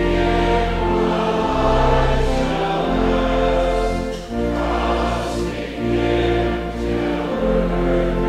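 A hymn sung by many voices in held chords over a steady, deep accompaniment, the chords changing every second or two.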